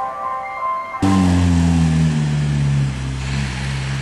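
Ice cream van chime playing a tinkling melody, cut off abruptly about a second in. A louder vehicle engine takes over, its pitch falling at first and then holding steady.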